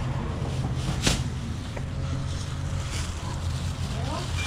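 Thin plastic shopping bag rustling and crinkling as it is opened and an item is slipped into it, over a steady low rumble of wind on the microphone. A sharp click about a second in.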